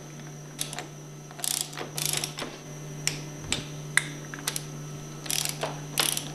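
Torque wrench ratcheting as it tightens the brass valve caps on a plunger pump head to 85 foot-pounds. It clicks in short rapid runs, about a second and a half in, at two seconds, and again near the end, with single clicks between the runs.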